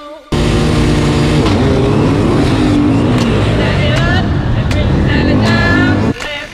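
KTM enduro motorcycle engine heard from on the bike, starting abruptly and running hard with its pitch rising and falling as the throttle opens and closes.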